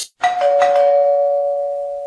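Doorbell chiming ding-dong: a higher note followed a moment later by a lower one, both ringing on together and fading slowly.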